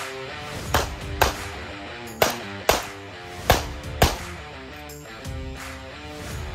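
Six 9mm pistol shots fired in three quick pairs, the two shots of each pair about half a second apart, with guitar music playing underneath throughout.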